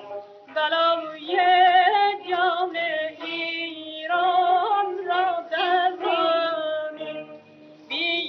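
A woman singing a Persian tasnif in long, vibrato-laden phrases with short breaks between them, from a 1940s recording that sounds thin and narrow. A longer pause between phrases comes near the end.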